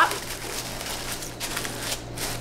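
Paper shred packing fill rustling and crinkling as hands press and spread it over items in a cardboard shipping box.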